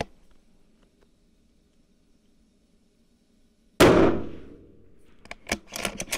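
A single shot from a 6 BRA precision bolt-action rifle fitted with a muzzle brake, about four seconds in: one sudden loud crack with a ringing tail that fades over about a second. Near the end comes a run of sharp clicks as the bolt is worked for the next round.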